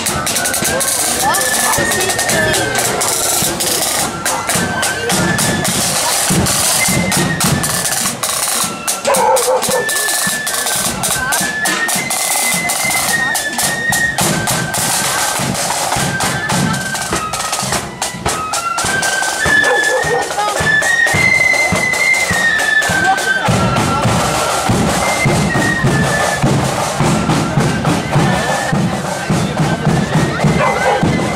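Marching flute band playing a tune, the flutes together on one stepping melody over a steady beat of bass drum and snare drums, with spectators talking.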